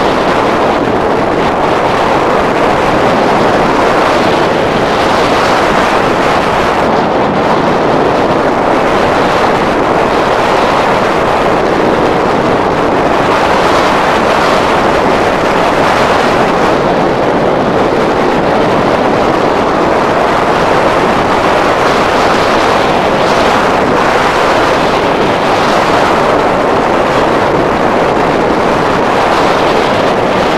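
Loud, steady rush of airflow over a hang glider in flight, buffeting the microphone of a camera fixed to the wing.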